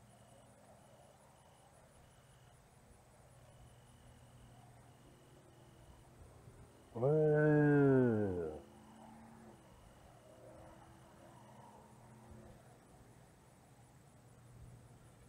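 A man's drawn-out wordless voice sound, about a second and a half long, starting about seven seconds in and falling in pitch, against a quiet background with a faint high tone that comes and goes.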